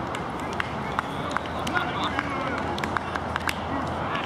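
Voices shouting and calling out across a rugby pitch during open play, over a steady outdoor noise, with scattered sharp clicks.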